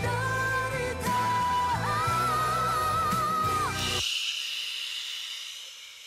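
Female pop ballad singer with band and orchestra, holding a long belted note with vibrato that slides down at its end. The music cuts off about four seconds in, leaving only a faint high hiss.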